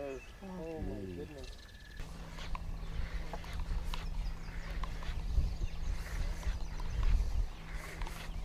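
A wordless, wavering voice sound in the first second and a half. Then, from about two seconds in, a steady low hum over wind rumbling on the microphone, with scattered faint clicks.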